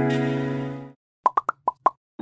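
A sustained synth chord from the intro music fades out, then five quick pitched pops follow in rapid succession: a cartoon pop sound effect for an animated subscribe button.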